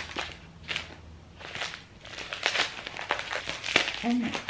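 Packaging crinkling and rustling in irregular bursts as a tightly wrapped parcel is worked open by hand.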